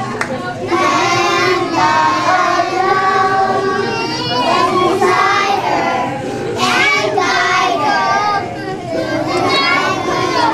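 A group of young children singing a song together in sung phrases, with short breaks between phrases.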